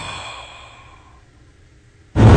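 A person's soft, breathy exhale like a sigh, fading away over about a second and a half into faint hiss.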